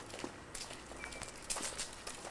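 Footsteps on a concrete sidewalk: a few scattered shoe scuffs and taps outdoors, with a brief high chirp about a second in.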